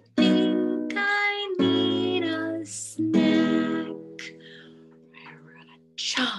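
Acoustic guitar strummed: three chords about a second and a half apart, each left to ring, the last fading out over the final couple of seconds.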